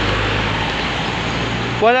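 Steady roadside traffic noise with a low engine hum underneath, which drops away near the end as a man starts speaking.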